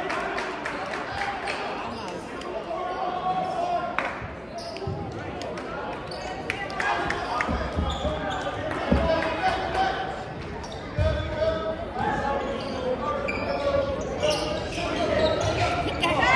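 A basketball bouncing on a hardwood gym floor now and then, over a steady murmur of spectators' voices in a large echoing gym.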